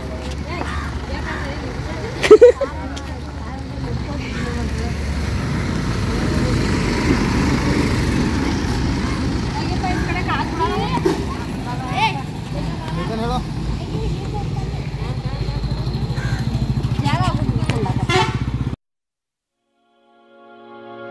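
Background voices of several people talking over a low rumble on the microphone, with one brief loud sound about two seconds in. The sound cuts off abruptly shortly before the end.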